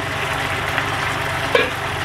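Sweet-and-sour sauce simmering and bubbling in an uncovered frying pan, over a steady, evenly pulsing low hum from the electric glass-top cooktop. A brief knock sounds about one and a half seconds in.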